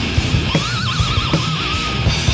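Old-school thrash metal played live and heard from a cassette recording: distorted guitars, bass and pounding drums. About half a second in, a high note slides up and is held with wide vibrato.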